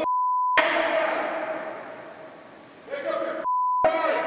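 Two censor bleeps, each a steady single-pitch beep of about half a second that replaces all other sound: one at the very start and one just before the end, blanking out profanity in a hockey coach's shouting during practice.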